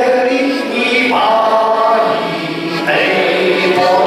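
A man singing a Czech folk song while accompanying himself on a diatonic button accordion, the accordion's held notes sounding under the melody.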